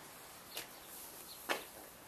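Faint handling noise: two brief rustles about a second apart as a gopher snake is gripped and worked against a metal shelf.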